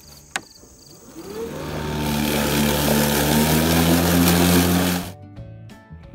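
Toro 60V battery-powered lawn mower: a click as the start button is pressed, then the electric motor and blade spin up with a rising whine and run steadily for about three seconds before cutting off suddenly. The mower shuts itself off under the heavy load of tall, wet grass, which the owner puts down to excessive load and a battery starting to wear out.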